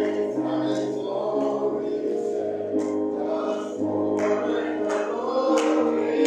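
Gospel choir singing in a church, backed by held chords and a bass line that moves to a new note about once a second. Sharp percussion hits come in during the second half.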